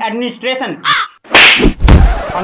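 A young man's voice, cut off by a short high squawk-like cry, then a loud rushing hit and a sharp smack with a low thud near the end as he is knocked to the floor: slapstick hit sound effects.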